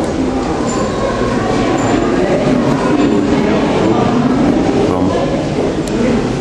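Steady, loud background din with indistinct voices mixed in, without clear words.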